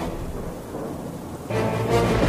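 Thunderstorm sound effect: a steady hiss of rain, then a loud low rumble of thunder breaking in about a second and a half in.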